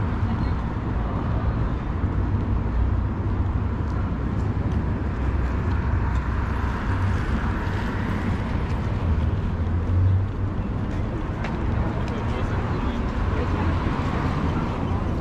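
Street traffic ambience: a steady low rumble of cars on the road, with one car's tyre noise swelling past in the middle.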